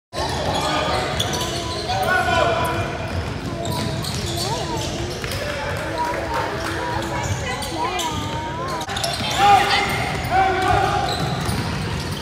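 Basketball game sounds in a large echoing gym: a ball bouncing on the hardwood floor amid sneakers and players' and spectators' indistinct shouts.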